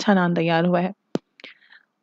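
A woman's voice speaking for about the first second, then a pause broken by a sharp click, a fainter click and a short breathy sound.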